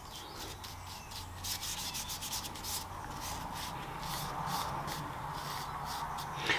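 A bristle brush scratching across card as shellac (French polish) is painted on, in quick, irregular back-and-forth strokes, a few a second.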